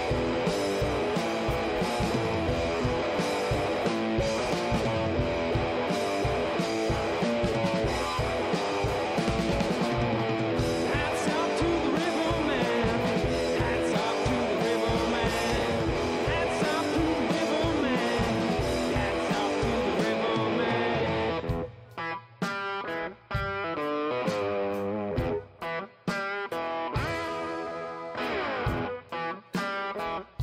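Live rock playing by a duo on electric guitar and drum kit. About three-quarters of the way through, the drums drop out and the electric guitar carries on alone in short stop-start phrases with brief gaps.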